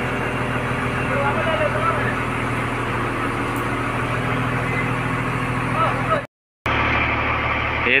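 Diesel engine of a loader idling steadily, a constant low hum, with a brief dropout about six seconds in.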